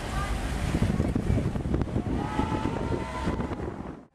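Wind buffeting the microphone in a low, gusty rumble over outdoor ambience, with faint distant voices of people.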